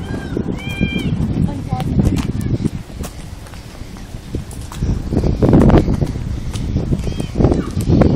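Indistinct voices over a low rumbling noise on a phone microphone while walking outdoors, with a few short high-pitched calls near the start and again near the end.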